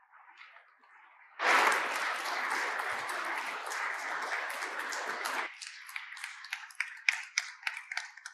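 Audience applauding. The applause starts suddenly about a second and a half in and stays full for about four seconds, then thins abruptly to scattered single claps.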